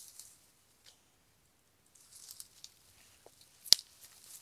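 Dry leaves and sticks rustling and crackling in short patches, with a sharp click at the start and a louder sharp click near the end.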